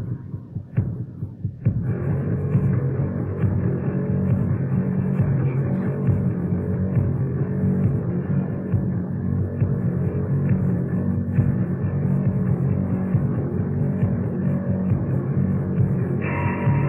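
Post-punk rock band playing live, heard through a muffled, lo-fi recording with the treble cut off. After a brief thinner lull, a low, throbbing, bass-heavy groove with a steady beat comes in about two seconds in and carries on.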